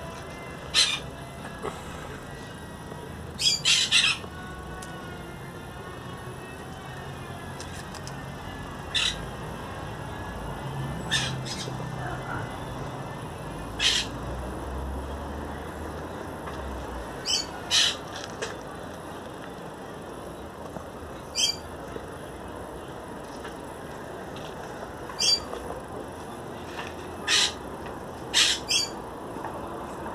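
Short, sharp bird calls repeating at irregular intervals, about twenty in all, over a steady background hiss.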